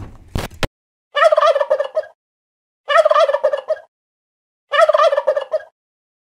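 Turkey gobbling three times, each rapid warbling call about a second long, with roughly two seconds between them. A couple of sharp clicks come just before, at the very start.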